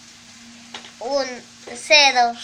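Steady low hum with a faint hiss of room noise, broken by a click and one short spoken syllable about a second in, with speech starting again near the end.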